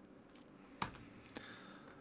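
Faint computer keyboard keystrokes: two short key clicks, one a little under a second in and another about half a second later.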